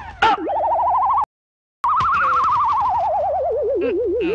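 Comic electronic sound effect: a single warbling tone, wobbling rapidly up and down in pitch. It cuts out for about half a second, then slides slowly downward in pitch.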